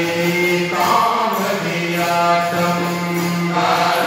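A group of voices singing a Hindu devotional bhajan together, drawing out long held notes.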